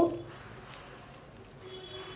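A woman's voice trails off on a rising, drawn-out word at the very start, followed by quiet room tone with a faint hiss.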